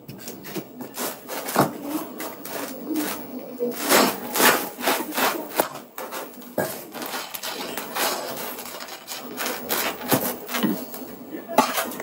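Irregular rubbing and scraping noises close to the microphone, coming in uneven bursts.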